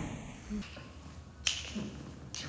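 A single sharp snap about one and a half seconds in, over the faint room sound of a dance studio during a class, with a brief low sound just before it.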